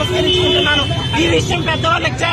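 A woman speaking heatedly over steady road-traffic noise, with a short steady tone, like a vehicle horn, near the start.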